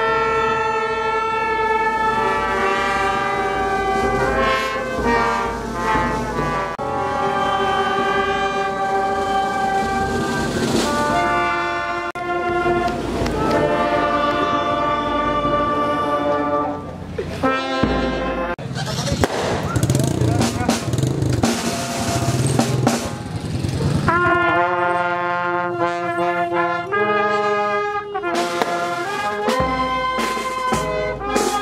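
A brass marching band playing a slow tune in held notes, trumpets and trombones leading. About two-thirds of the way through the tune gives way to a noisier stretch for several seconds before the brass comes back.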